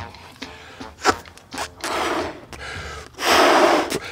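Soft clicks and handling noises, then a loud, breathy rush of air near the end: a person's sharp breath.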